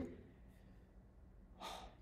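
Faint room tone, then a short intake of breath near the end, just before speech resumes.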